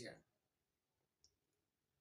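Near silence: room tone in a pause between sentences, with one faint short click about a second in.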